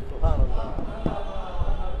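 Quieter speech between the preacher's louder phrases, with a dull low thump about a quarter second in and a short knock near the middle.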